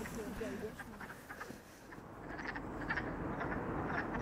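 A chorus of frogs calling: many short, clicking calls that thicken and grow louder from about halfway through.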